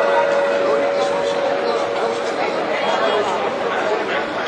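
Chatter of many people talking at once in a crowd, with the hum of a church bell dying away in the first second.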